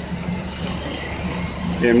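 Steak sizzling on a ridged grill pan over a flaring gas range burner: a steady hiss with a low hum beneath it. A voice starts just at the end.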